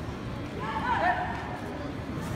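Background hubbub of a large sports hall. A distant voice is heard briefly about half a second in.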